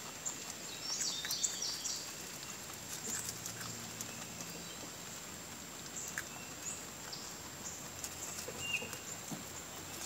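Domestic meat rabbits chewing fresh foraged leaves and grass: a steady stream of small quick crunches.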